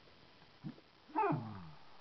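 Small terrier-poodle mix dog giving one short whining call that falls in pitch about a second in, its answer to a "speak" command. A faint short sound comes just before it.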